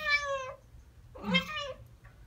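Ragdoll cat giving two short, high-pitched chirping meows about a second apart. This is the chirping or chattering call a cat makes at birds it hears or sees outside.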